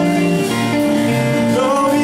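A live rock band playing, with keyboard, guitar and drums over a moving bass line. A wavering lead line bends in pitch near the end.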